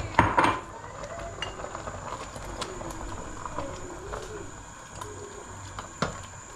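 Stainless steel pots and kitchen utensils clattering loudly once, early on, followed by scattered light clinks of metal on metal.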